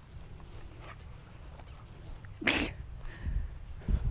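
A single short sneeze about two and a half seconds in, over a steady low rumble with a couple of dull thumps after it.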